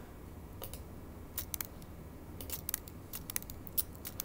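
About a dozen light, irregular clicks from a computer mouse and keyboard being worked, over a faint steady room background.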